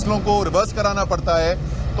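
A man speaking in a continuous statement, over a steady low background rumble.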